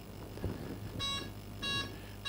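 An electric model plane's ESC (electronic speed controller) giving two short, quiet beeps of the same pitch, about half a second apart. These are its start-up beeps as the receiver is plugged in and powered up.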